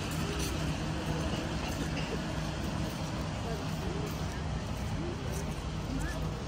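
Street ambience: a steady low rumble of traffic or an idling engine, with passers-by talking faintly here and there.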